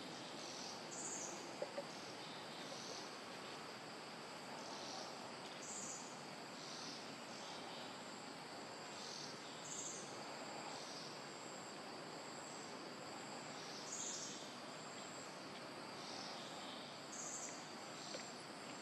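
Faint woodland ambience: insects keep up a steady high-pitched buzz, with short high chirps repeating about once a second. A couple of faint clicks come about a second and a half in.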